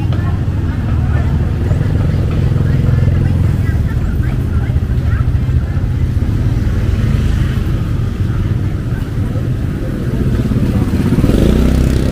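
Roadside market ambience: a steady low rumble of motorbike traffic, with faint voices chattering in the background.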